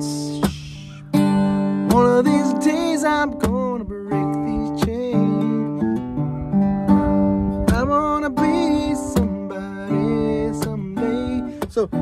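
Carbon-fibre acoustic guitar strummed with the fingernails instead of a pick, in a steady chord rhythm after a brief pause at the start, with a man's voice singing along.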